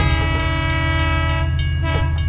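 Train horn sounding one long, steady blast over a low rumble from the moving train.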